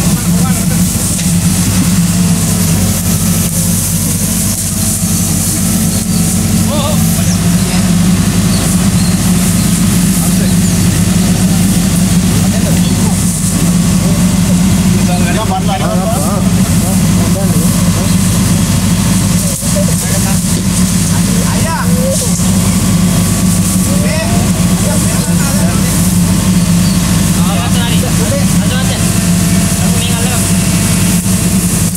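Backhoe loader's diesel engine idling steadily close by, a loud even rumble, with men's voices faintly heard over it now and then.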